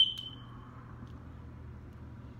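A fork clinks against a dish: one sharp metallic clink with a brief high ring that fades within about half a second, followed by a smaller tap.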